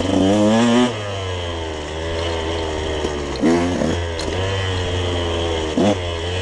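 Dirt bike engine being ridden along a trail, revving hard in the first second, easing back, then revving up again about three and a half seconds in and briefly near the end.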